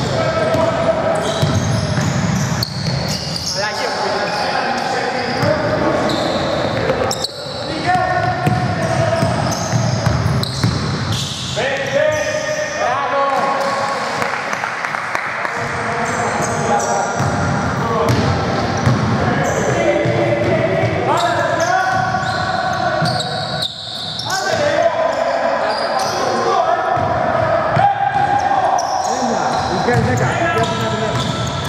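A basketball being dribbled and bouncing on a hardwood gym floor during play, with players' voices calling out across the reverberant hall.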